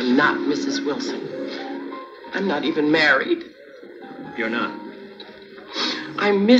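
A television soundtrack played through a TV set: background music with held notes, and a couple of brief bursts of voice partway through.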